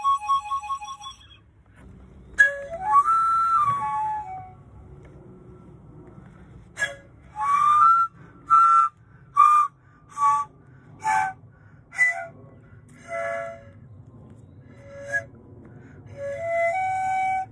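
3D-printed resin eight-tube pan flute played in short, breathy notes. It opens with a quick run of repeated notes, plays a phrase that climbs and falls back a couple of seconds in, then a string of short separate notes from about seven seconds on, over a low steady background noise.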